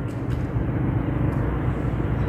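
A steady low engine-like drone with a constant pitch and no rises or falls.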